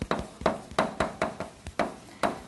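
Chalk writing on a blackboard: a quick run of sharp taps and clicks as the chalk strikes and drags across the board, about three or four strokes a second.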